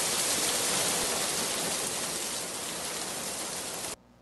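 A steady hiss with no beat or melody, the lofi track's background noise layer left running after the beat has stopped. It fades slowly and cuts off suddenly right at the end.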